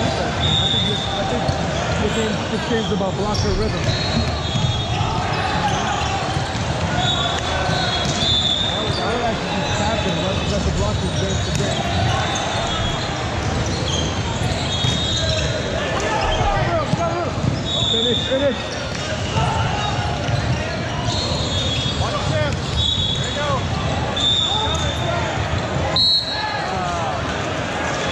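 Echoing din of a large gym during volleyball play: many voices talking and calling at once, with repeated short, high sneaker squeaks on the hardwood court and thuds of the ball being struck and bouncing.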